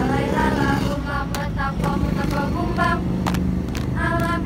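A group of young women's voices chanting in unison for a seated group dance, with several sharp body-percussion hits from about a second in, over a low steady rumble.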